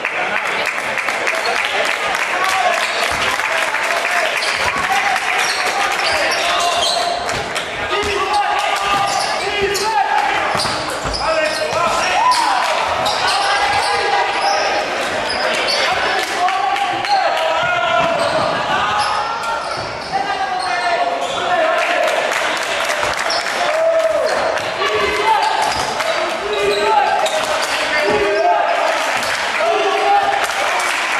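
Basketball bouncing on a hardwood gym floor with repeated sharp strokes during play, mixed with indistinct voices of players and spectators, all echoing in a large sports hall.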